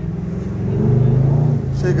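Chevrolet Camaro's engine running while the car drives in slow traffic, heard from inside the cabin as a steady low hum that swells a little about a second in.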